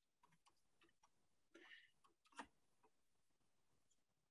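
Near silence: room tone, with one faint, short click about two and a half seconds in.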